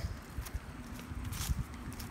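Footsteps of a person walking, a few soft thuds.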